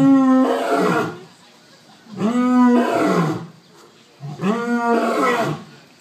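Lion roaring: three long, loud roars about two seconds apart, each rising and then falling in pitch.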